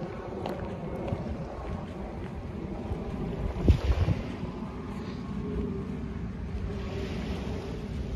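Wind buffeting a handheld phone's microphone as a steady low rumble, with a stronger gust hitting it a little under four seconds in.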